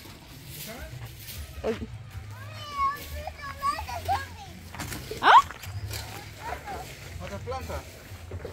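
Children's voices chattering and calling, with a short sharp rising cry about five seconds in, the loudest sound.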